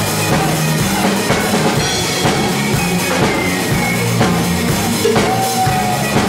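Live band playing loudly, a drum kit keeping a steady beat under bass guitar notes.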